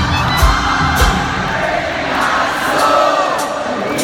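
Live band music at an arena concert, with drum beats through the first second and then a lighter passage, under a large crowd cheering and singing along, heard from within the audience.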